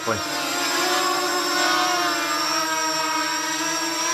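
Flying 3D X6 quadcopter's motors and 5040 propellers running in a hover, giving a steady whine of several tones whose pitch wavers slightly. The motors are correcting for turbulence in the room.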